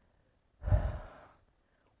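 A man's single sigh, a short breathy exhale that starts just over half a second in and fades within about a second.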